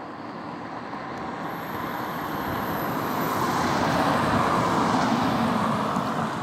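A car driving past close by, its tyre and engine noise swelling steadily to a peak about two-thirds of the way through, then easing slightly as it moves away.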